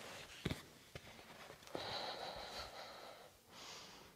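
A short thump about half a second in as a yoga block is set down, two fainter knocks, then a long breath out and a shorter breath in, heard close up.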